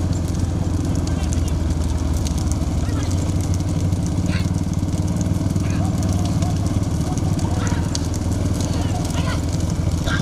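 Steady drone of several motorcycle engines running close behind racing bullock carts, with men's shouts breaking in now and then.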